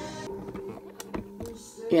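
A few short, light clicks and taps about halfway through, over faint steady background music.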